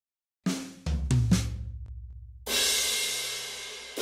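Drum kit intro sting: a quick fill of four deep drum hits in the first second and a half, with low booming tones ringing under them, then a cymbal crash about two and a half seconds in that rings on and slowly fades.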